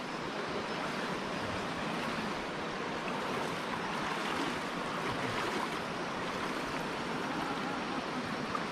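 Shallow cave stream water rushing and sloshing steadily as people wade through it.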